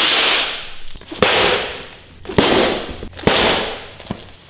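Helite motorcycle airbag vests inflating, four times in quick succession: each a sharp pop as the gas cartridge fires, followed by a rush of gas lasting under a second.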